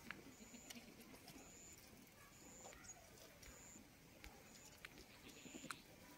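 Near silence with faint outdoor background: a short, high-pitched chirp repeats about once a second, with a few faint clicks.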